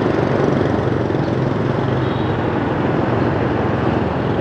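Steady drone of a motorbike engine and road noise while riding through city traffic.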